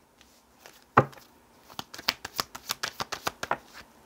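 A deck of oracle cards being handled and shuffled: one sharp snap about a second in, then a quick run of card clicks lasting about two seconds.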